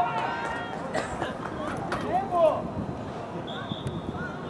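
Voices shouting calls across an outdoor soccer field during play, with a short, steady high tone near the end.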